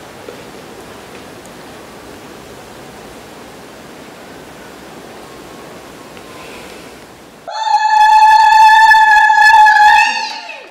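Steady low background hiss. About seven and a half seconds in, a woman breaks into a loud, high-pitched zaghrouta, the trilling Arab ululation of celebration, and holds it to the end.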